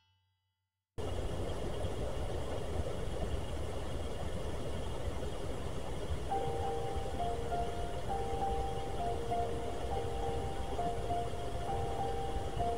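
Silence for about a second, then steady outdoor rushing noise starts abruptly. From about six seconds in, faint music plays, a simple melody of a few alternating held notes.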